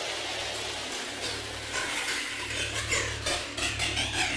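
Opening of a psytrance track: a hissing noise texture over a low steady hum, with a voice sample coming in about halfway through.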